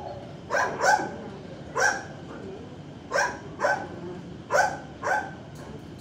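A dog barking about seven times in short, uneven bursts, mostly in pairs, with the loudest bark about a second in.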